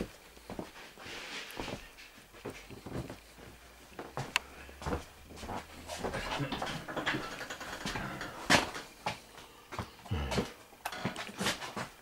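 Irregular knocks, clicks and rustles of a handheld phone being carried while someone walks through the house.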